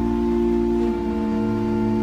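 Church organ playing slow, held chords, the harmony shifting about a second in.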